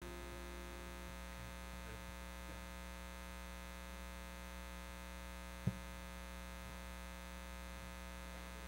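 Steady electrical mains hum from the sound system, with one faint click about two-thirds of the way through.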